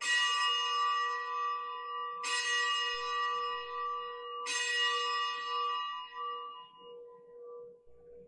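Consecration bell struck three times about two seconds apart, each stroke ringing with several overtones and fading away. It marks the elevation of the chalice just after the words of consecration.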